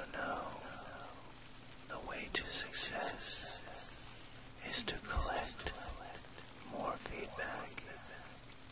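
Soft whispered voice-over over a steady rain recording, with a low steady isochronic tone underneath.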